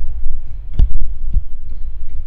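Low rumbling handling noise from a moving handheld camera, with a sharp knock a little under a second in and a softer knock about half a second later as the lectionary is handled on the wooden ambo.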